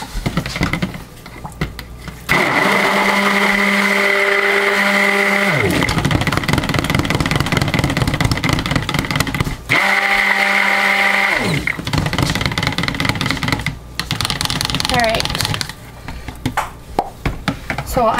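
Stick blender running in a pitcher of cold-process soap batter. It switches on about two seconds in, drops out briefly and restarts near the middle, and stops a few seconds before the end. Its whine falls in pitch twice while it runs.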